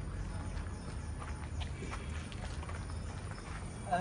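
Footsteps of someone walking with the camera, heard as faint, irregular knocks over a steady low rumble on the microphone. A short burst of voice comes right at the end.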